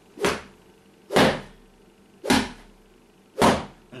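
A long, thin cane swished rapidly through the air from the wrist four times, about once a second, each a short whoosh.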